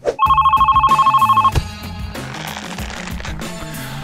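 Electronic telephone ring: a loud, fast-pulsing two-tone trill lasting about a second and a half, followed by a soft hiss, over background music.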